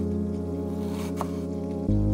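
Chef's knife cutting through onion on a wooden cutting board, one short crisp chop about a second in, over steady background music.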